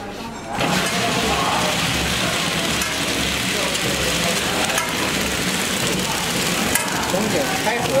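Horizontal flow-wrap tray packing machine running, a steady mechanical noise that starts abruptly about half a second in, with faint ticks from the wrapping and sealing mechanism.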